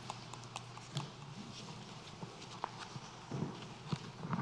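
Faint, irregular footsteps and small knocks as a person walks up to a lectern, over a steady low room hum.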